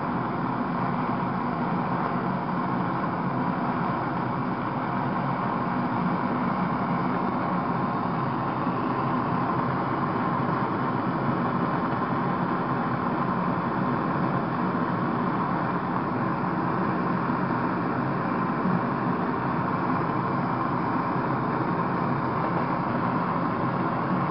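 MAPP gas blow torch burning steadily at a turned-up flame, a continuous even rushing sound, as it melts gold powder in a ceramic melting dish.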